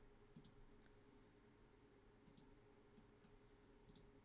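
Near silence: faint room tone with a few soft computer mouse clicks, some in quick pairs.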